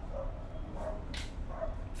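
A dog barking faintly in the distance, a few short barks, over a low steady hum. There is a brief rustle near the middle.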